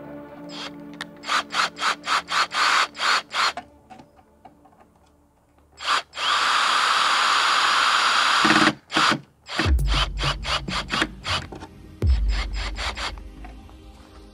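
Hitachi cordless drill working into the edge of a plywood panel: a run of short trigger pulses, then a sustained run of nearly three seconds midway, then a few more short pulses. Background music with a deep beat comes in in the last few seconds.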